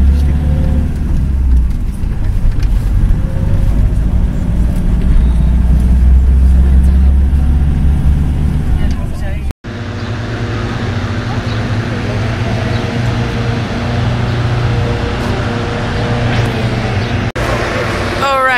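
Steady low rumble of a minibus engine and road noise, heard from inside the van. About halfway through it cuts off suddenly and gives way to a lighter steady low hum with outdoor background noise.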